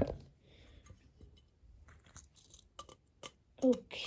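Faint handling noise: a few scattered light clicks and rustles of hands moving plastic model parts or the filming phone.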